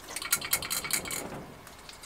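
Clear plastic bag crinkling as it is handled, a quick irregular run of crackles that thins out after about a second.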